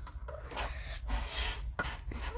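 A hand rubbing and turning a desktop globe on its stand, a rough scraping with a few short clicks, the clearest near the end.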